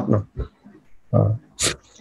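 A man's voice pausing between phrases: a short low hum about a second in, then a brief hissing breath.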